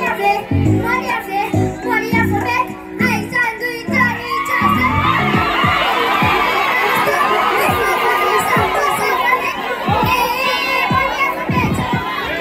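Music with a heavy bass beat for the first few seconds, then a large crowd, many of them children, cheering and screaming loudly while the beat carries on underneath.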